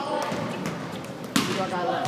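Basketball bouncing on a hardwood gym floor, with one sharp bounce a little past halfway, in an echoing hall with players' voices faint in the background.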